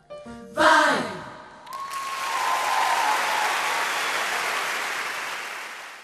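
Vocal choir's loud closing chord about half a second in, its pitch sliding down, then audience applause with a long held cheer over it, fading out near the end.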